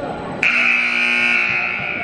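Gymnasium scoreboard buzzer sounding once: a loud, steady electronic tone that starts abruptly about half a second in and cuts off after about a second and a half.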